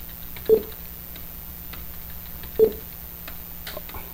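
Two short dull knocks about two seconds apart and a few faint clicks near the end, over a steady low hum: keystrokes on a computer keyboard while typing.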